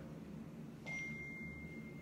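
Quiet room tone; a little before halfway in, a faint, thin, steady high-pitched beep starts and holds for over a second.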